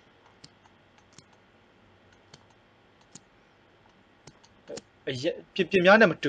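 Sparse single clicks of a computer mouse, roughly one a second, over faint steady hiss; a man's voice starts speaking near the end and is the loudest sound.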